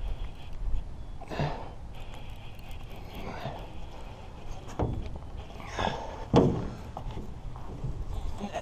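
Several separate hollow thunks and knocks from a small metal boat as someone shifts about in it, with the strongest knock late on, over a low wind rumble on the microphone.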